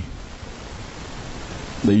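Steady hiss of background noise with no clear pattern. A man's voice through a microphone starts again near the end.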